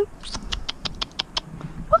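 A quick run of about seven tongue clicks, roughly six a second: a carriage driver clucking to a Shetland pony, the cue to walk on.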